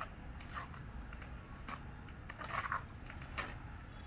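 Trowel scraping and scooping through wet cement mortar in a metal pan, in irregular strokes about every half second to a second, with a louder scrape about two and a half seconds in, over a steady low rumble.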